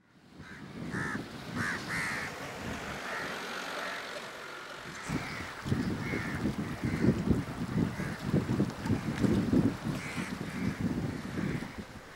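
Crows cawing: a quick run of short, harsh calls in the first couple of seconds and a few more scattered later, over steady outdoor background with an uneven low rumble from about five seconds in.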